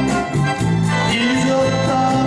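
Live band playing a Korean trot song, with electronic keyboard, guitar and a steady backing beat, while a male singer sings into a microphone.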